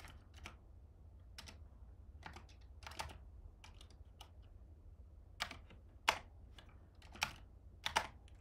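Typing on a computer keyboard: irregular key clicks, with several louder strokes in the second half, over a low steady hum.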